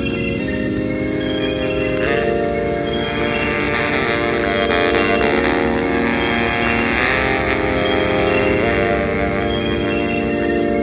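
Instrumental hip-hop music with no vocals: held chords that shift to new pitches every second or two over a steady low end.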